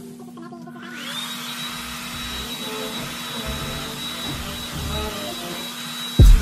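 Handheld hair dryer switched on about a second in: its motor whine rises and settles into a steady high tone over an even rush of blowing air.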